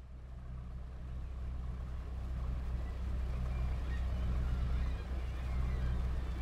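Low, steady hum of a small fishing boat's engine over a wash of sea noise, fading in from silence, with faint gull calls above it.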